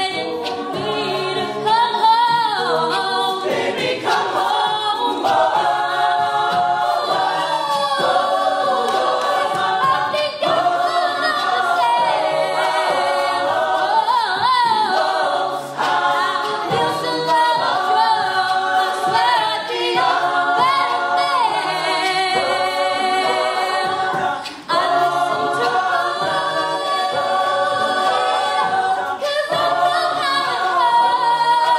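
Mixed-voice a cappella group singing without instruments: a female lead at the microphone over sustained vocal harmonies from the ensemble of women and men.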